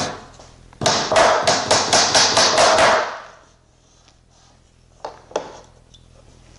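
Magnetic tack hammer driving a half-inch brad into a quarter-inch sheet: a quick run of about a dozen light taps, around five a second, each with a slight ring, starting about a second in. Two more single taps follow near the end.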